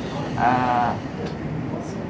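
A voice making one short, drawn-out, slightly wavering hesitation sound, about half a second long, over a steady background noise.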